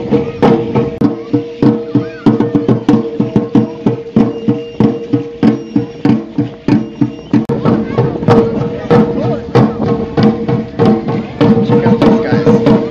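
Aztec dance drumming: drum beats in a steady fast rhythm, about three a second, over a steady held tone, with voices underneath.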